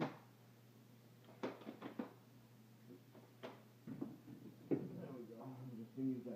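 Xtend & Climb 780P aluminium telescoping ladder being extended section by section: a series of sharp clicks and knocks as each rung is pulled up and latches into place, the loudest a little before the end, over a low steady hum.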